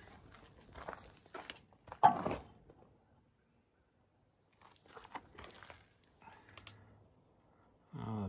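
Handling and walking noises: footsteps crunching on bark mulch and a wooden gauge block knocked and rubbed against a steel sawmill bunk. They come as scattered short noises with one louder knock about two seconds in, then a brief dead gap and faint rustling.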